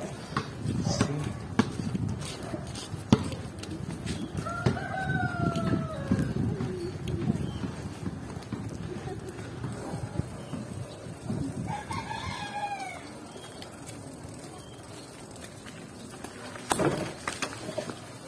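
A rooster crowing twice, a long crow about four seconds in and a shorter one around twelve seconds in, over the steady low running of a motorcycle tricycle's engine.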